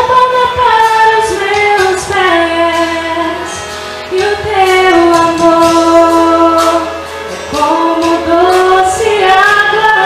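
A woman singing solo into a handheld microphone, holding long notes that glide from one pitch to the next.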